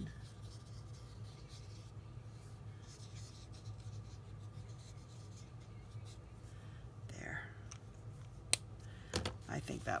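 Faint scratching of a Stampin' Blends alcohol-marker tip colouring on cardstock, over a steady low hum. Near the end come a sharp click and a few more clicks as the card is handled.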